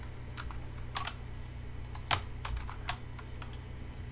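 Computer keyboard keys pressed a few times: scattered, separate clicks with gaps between them, over a low steady hum.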